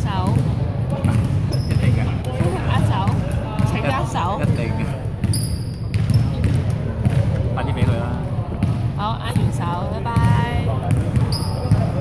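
Several voices talking and calling out at once in a reverberant gymnasium, with sneakers squeaking on the hardwood court.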